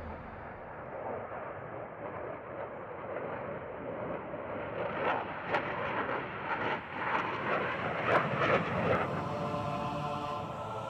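Jet noise from a MiG-29's twin turbofan engines as it flies a display. It is a steady rushing sound that grows louder in the second half, with a run of sharp crackles.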